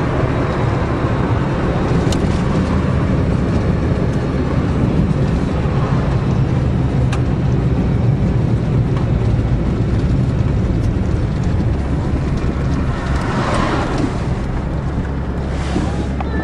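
Diesel van driving at steady speed, heard from inside the cab: a steady low engine drone over tyre and road noise.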